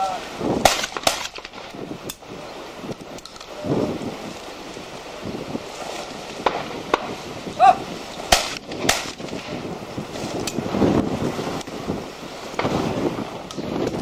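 Shotguns firing at clay targets: two shots about half a second apart near the start, then a short call followed by two more shots in quick succession just after the middle.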